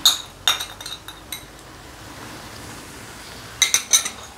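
Metal spoon clinking against a ceramic bowl as a sauce mixture is scraped out into a wok. There are a few ringing clinks at first and a quick run of them near the end, with the soft hiss of chicken frying in oil in between.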